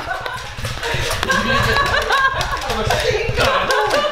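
Toy foam-dart blasters being fired, with a string of short sharp clicks and snaps from the shots and the darts hitting, over excited voices. One of the blasters is an electric, motorised one.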